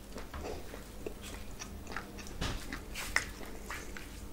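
Close-miked chewing and biting into pieces of mutton on the bone, with many small mouth clicks and smacks and one sharper click about three seconds in.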